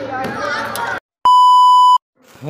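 Street voices break off suddenly about a second in. After a moment of silence comes a loud, steady, high-pitched test-tone beep, the tone that accompanies TV colour bars.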